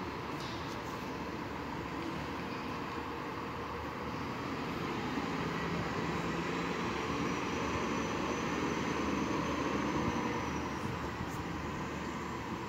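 Distant city transit bus engine running with steady traffic noise, growing louder for several seconds in the middle as the bus pulls out, with a faint high whine near the peak.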